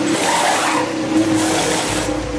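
Formula 1 pit stop in progress: a loud, steady rush of noise with a steady hum under it, from the car's engine running and the crew's pneumatic wheel guns as the tyres are changed.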